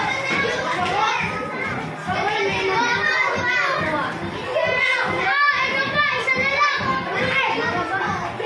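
A crowd of young children calling out and chattering at once, many high voices overlapping loudly without a break.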